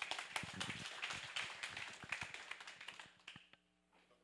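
An audience applauding: a short round of many hands clapping that thins out and dies away about three and a half seconds in.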